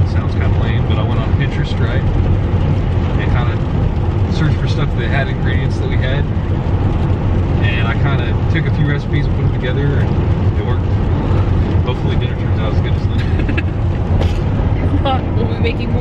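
Steady low road and engine rumble inside a moving vehicle's cabin, with conversation and laughter over it.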